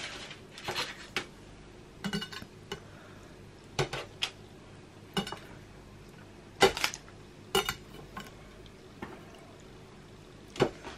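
Metal knife blade clinking and scraping on a glass chopping board as thin shards of white chocolate are slid onto it and lifted off: scattered short clicks, some in quick pairs, with quiet between them.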